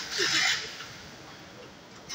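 Low, even city street background heard while walking on a pavement, with a brief louder rush of hiss in the first half second.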